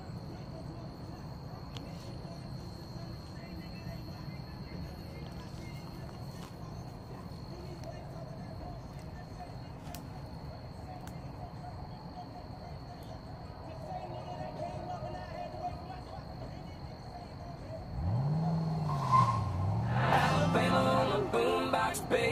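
Quiet outdoor background in a break in the music: a low steady rumble of distant road traffic with a faint, steady high-pitched tone over it. About eighteen seconds in the sound grows louder with low sliding pitches, and music comes back near the end.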